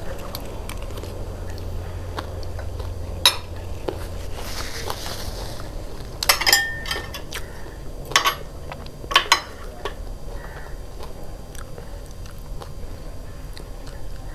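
Close-up eating sounds: chewing a mouthful of crunchy charpatey (spiced puffed rice). A few sharp clinks of metal chopsticks and cutlery on ceramic plates come about three, six, eight and nine seconds in, the loudest events.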